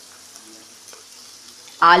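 Chopped onion and green chilli sizzling in hot oil in a kadhai, a steady soft hiss, with a few faint clicks as chopped potatoes are tipped in from a bowl.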